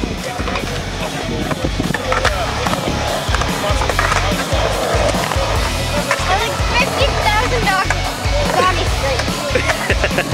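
Skateboard wheels rolling and carving across a concrete bowl, with music playing.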